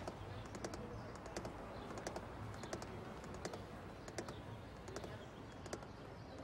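Light ticking at an even pace inside a car, a close pair of clicks about every 0.7 seconds, over a low steady cabin rumble.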